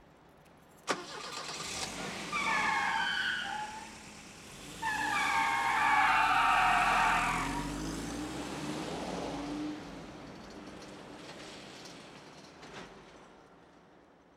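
A car starts up and drives off hard: a click about a second in, then high squealing tones in two long stretches over the engine's rumble, the second the loudest, before the engine sound fades away.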